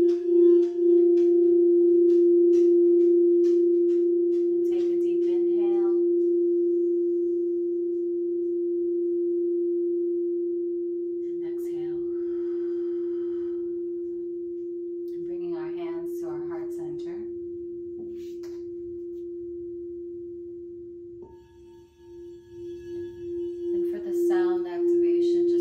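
Crystal singing bowl ringing with one sustained, steady tone, played by working a wand around its rim. The tone pulses near the start and fades and then wavers back up near the end as the wand is run around the rim again.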